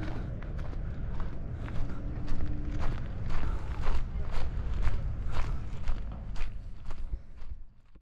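Footsteps walking at an even pace, about two steps a second, over a steady low rumble.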